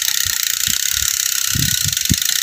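Bicycle rear hub's ratchet clicking as the chain is turned round by the cranks and runs over the cassette and rear derailleur while it is being oiled, with irregular low knocks from the drivetrain.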